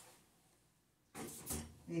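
A saucepan set down on a gas stove's burner grate: a faint, brief clatter about a second in.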